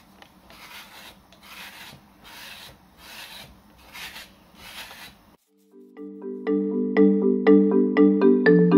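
A metal kidney scraping and smoothing the inside wall of a coil-built clay bowl in short strokes, about two a second. About five seconds in, the scraping cuts off and a marimba-like mallet tune starts, louder than the scraping.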